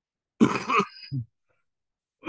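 A man clearing his throat once, about half a second in: a short harsh burst with a brief voiced tail, then silence.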